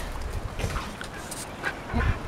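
Black-and-tan puppies giving a few brief, soft whimpers and yips.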